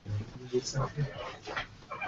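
Low, quiet murmured speech: a few short, broken-off mumbled syllables in a low man's voice, with pauses between them.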